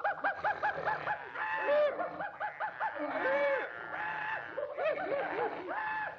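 Cartoon animal voices chattering, honking and snickering: a rapid run of short, pitched calls that rise and fall, several a second, with a few longer held notes.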